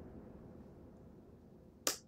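Faint room tone sinking lower, then a single sharp click near the end as the on-screen video is paused.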